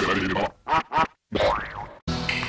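Effect-processed cartoon logo audio, chopped and distorted: a few short bursts, a brief cut to silence, then a sound that rises and falls in pitch and fades out.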